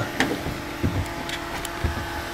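Steady electric-motor hum from a running refrigeration rig, with a few light clicks and knocks over it.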